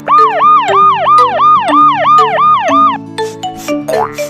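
Cartoon police-siren sound effect: about eight quick rising-and-falling whoops, roughly three a second, stopping about three seconds in, over light background music.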